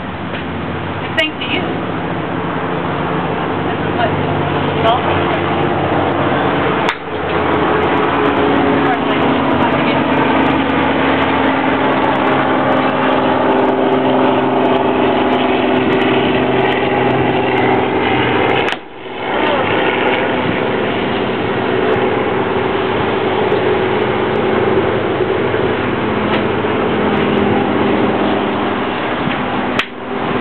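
A steady engine-like drone with slowly shifting pitch and a few sharp clicks near the start. The sound drops out briefly twice.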